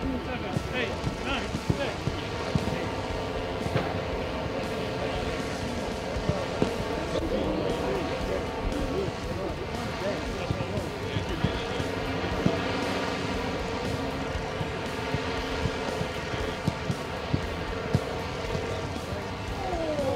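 Outdoor football training ambience: distant players calling out, with a few sharp kicks of a football scattered through, over a steady droning tone.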